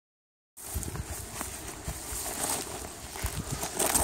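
Handling noise from a phone's microphone as the phone is held and moved: rustling with irregular low thumps, starting about half a second in.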